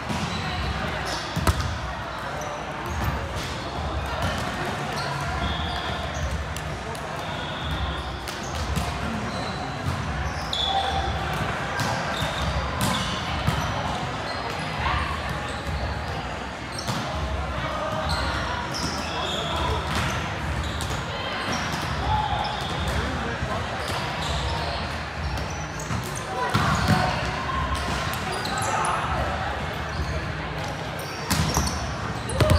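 Indoor volleyball gym: volleyballs being bounced and struck on a hard court, with players' voices in the background, echoing in a large hall.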